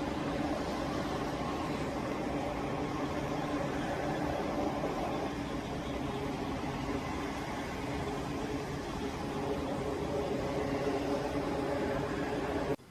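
Steady jet engine noise: a constant roar with a hum of several held tones.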